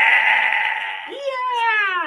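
Voices reacting with drawn-out exclamations: a dense overlapping 'ooh'/'aww' sound, then a single high 'wooo' that rises briefly and slides down in pitch over about a second before breaking off.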